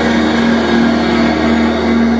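A live post-rock band's distorted electric guitars holding a loud, steady chord that rings on without drum hits.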